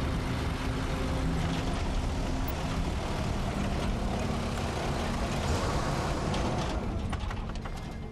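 Open four-wheel-drive vehicle being driven along a bush track: a steady engine note with road and rattle noise, easing off near the end.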